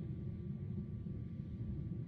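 Soyuz rocket's first stage, its four strap-on boosters and core engine firing, heard from far off as a steady low rumble.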